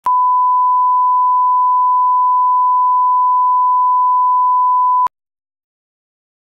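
A steady, single-pitch television line-up test tone, the reference tone that goes with colour bars at the head of a tape. It lasts about five seconds and cuts off suddenly.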